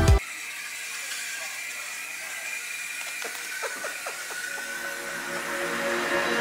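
Toy 'Little Panda' coin-stealing bank's small motor and plastic gears, a few faint clicks as the panda's arm works to grab the coin on the lid, over quiet room noise.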